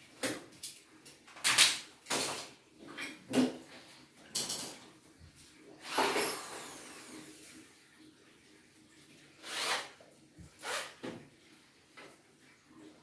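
A string of separate knocks, scrapes and clatters, about nine in all with short gaps between, from a workman stepping off and back onto a metal chair and handling tools during the dismantling of an aluminium door frame.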